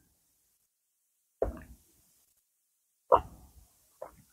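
A man gulping a drink from a mug: two separate swallows, one about a second and a half in and one near the end, with near silence between.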